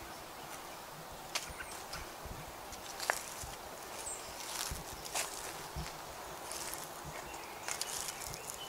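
One person's footsteps walking along a woodland trail over fallen leaves, faint and irregular, with a soft step every second or so.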